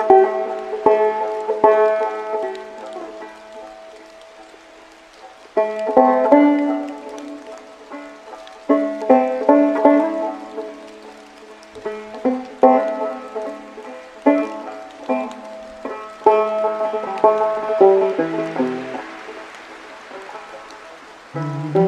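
Banjo played slowly, in short phrases of plucked notes that ring out and fade, with pauses between phrases. A steady rain hiss sits underneath.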